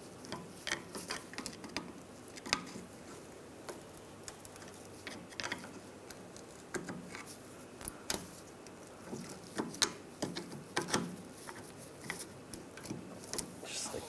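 Irregular light metallic clicks and taps of a screwdriver and wrench against a rear brake caliper as the parking brake cable is worked free of the caliper lever.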